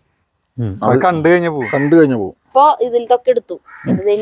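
A person's voice speaking in two stretches, beginning about half a second in, with a short gap between them; the words are not made out.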